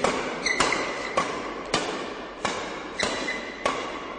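Badminton racket strings striking a shuttlecock in a fast flat drive exchange: six sharp hits about every 0.6 seconds, echoing in a large sports hall.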